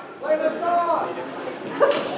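Voices in a large hall, with one drawn-out vocal call that rises and falls in pitch about half a second in, and a sharp knock near the end.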